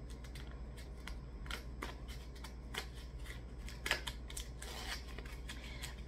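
Small eyeshadow palette's packaging being worked open by hand: a faint, irregular run of small clicks and crinkles.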